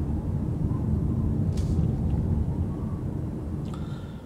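Road and tyre noise heard inside the cabin of a moving Nissan Leaf 40 kWh electric car: a steady low rumble with no engine sound, growing quieter near the end as the car slows.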